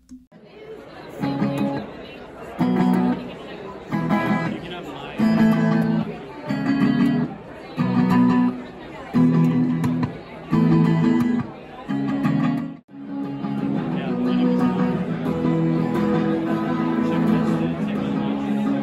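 Guitar played through a DSP guitar effects pedal built on an STM32H750 board: chords struck about every one and a half seconds. After a brief break about 13 s in, it turns into sustained, continuously ringing chords.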